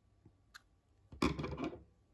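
Scissors snipping a crochet yarn tail close to the work: a short, sharp snip about half a second in, then a louder half-second burst of handling noise a little after a second in.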